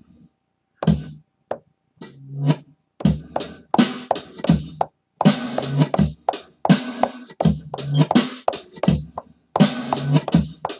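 Sampled drum kit played live on Akai MPC pads: a few hits and a swell that grows louder, then a steady beat from about three seconds in. Each press gives a regular hi-hat and each release a reversed hi-hat that builds up in loudness.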